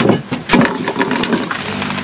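A few sharp clinks of plates and bowls being set down, then a motor humming steadily from about one and a half seconds in.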